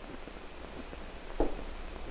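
Steady hiss and low hum of an old 16 mm film soundtrack, with one brief faint sound about a second and a half in.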